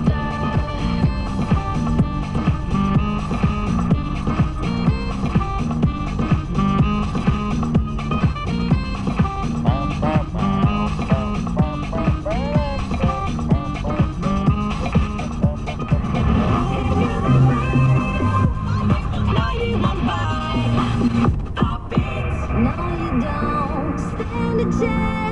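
Music with a steady beat playing from a car radio inside the car's cabin.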